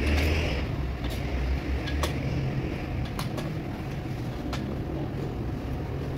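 Single sharp metallic clicks, about one a second at uneven spacing, as a hand tool works the bolts of a beadlock wheel's clamp ring, over a steady low machine hum. A short hiss sounds in the first half-second.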